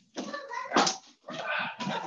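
High-pitched voices of young children, pitched calls that bend up and down in a series of short bursts, the loudest just before one second in.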